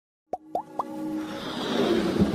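Animated logo intro sound effects: three quick plops, each sliding up in pitch, about a quarter second apart, followed by a whoosh that swells louder.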